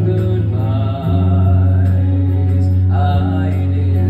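Male vocalist singing a slow song live into a handheld microphone, over accompaniment with long sustained low notes; the chord shifts about a second in.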